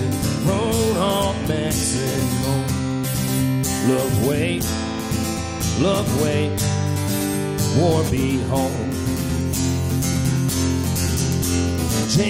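Acoustic guitar strummed steadily, accompanying a solo country-folk song.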